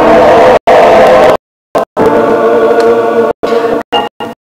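Men's choir singing held chords in several parts. The sound breaks off abruptly into brief silent gaps several times, once for about half a second in the middle.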